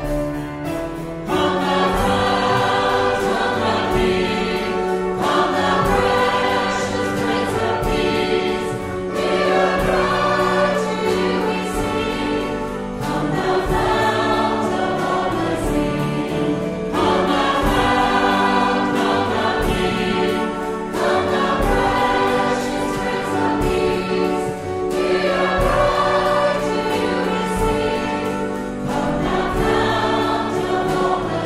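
Many voices singing a church song together with a held accompaniment underneath, the singing swelling in about a second in and moving in phrases of about four seconds each.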